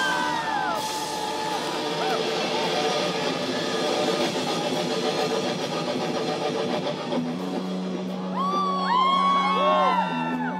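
A rock band playing live through a stage PA: electric guitars, bass and drums. About seven seconds in a steady low note comes in and is held, and voices call out over the band near the end.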